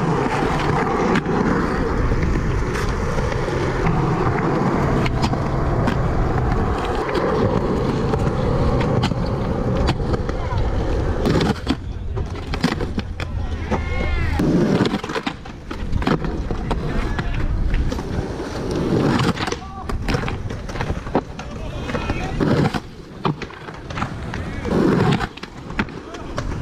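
Skateboard wheels rolling over concrete, a steady rolling noise for about the first eleven seconds. After that the rolling breaks up and sharp knocks of the board on the concrete come in.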